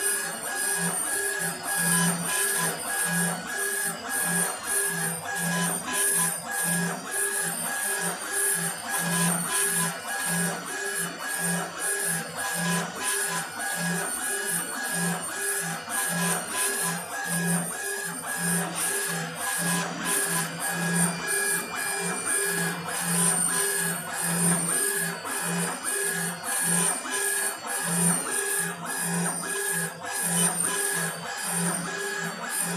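Laser engraving machine's stepper-driven gantry and head running back and forth while raster-engraving granite: a whining tone that pulses on and off about twice a second, once for each pass.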